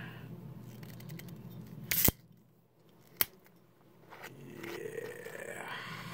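Twist-off cap of a glass malt liquor bottle cracked open: a short, sharp hiss of escaping carbonation about two seconds in, followed a second later by a single sharp click of the metal cap.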